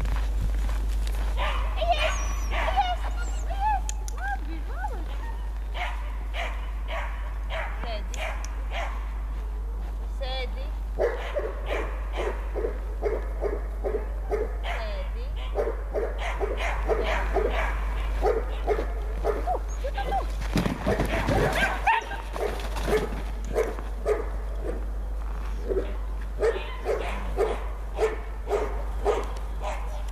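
Border collie puppy barking in a long series of short, evenly spaced barks, about two a second, through the second half, after high whining calls near the start.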